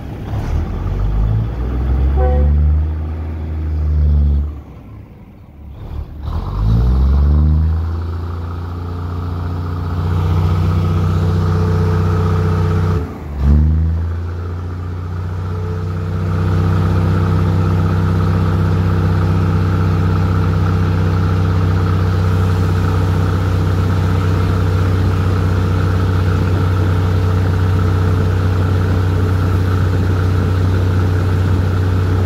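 Diesel engine of a passenger train pulling away from a station. Its note rises and falls back a few times in the first half, with a brief sudden drop near the middle, then holds steady and loud as the train gets under way.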